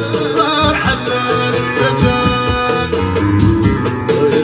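Live Middle Atlas Amazigh music: a male singer over instrumental backing with a steady beat.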